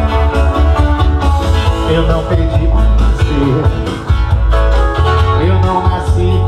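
Live band music: a strummed steel-string acoustic guitar and an electric guitar over a heavy bass line, with a male voice singing, clearest near the end.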